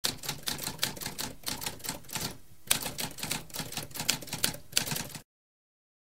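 Manual typewriter being typed on, a quick run of keystrokes at several a second, with a short pause about two and a half seconds in. The typing stops a little after five seconds.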